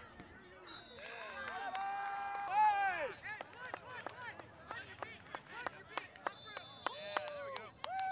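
People shouting during a quidditch match, the loudest a long drawn-out call about two seconds in that drops away at its end, with more shouts later. A scatter of sharp taps and clicks runs through the second half.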